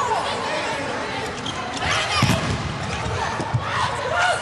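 Indoor volleyball rally: the ball is struck with a dull thud about two seconds in and again near the end, and players' court shoes squeak on the hall floor. Voices and crowd noise run underneath.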